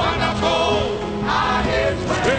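Church congregation singing a gospel song together in chorus.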